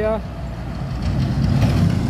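Diesel light dump truck driving past close by, its engine hum and tyre noise growing louder as it nears.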